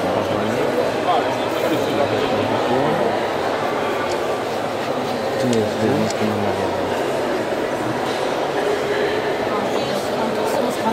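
Speech: a man talking over the steady chatter of a crowd in a large exhibition hall.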